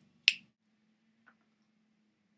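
A single sharp, loud finger snap, followed about a second later by a faint tick, over a faint steady low hum.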